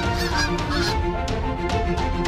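A flock of greylag geese honking in the first half, over steady documentary background music.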